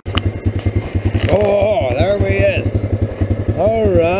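ATV engine running while riding, a steady rapid low putter, with a man's voice hollering twice over it: about a second in and again near the end.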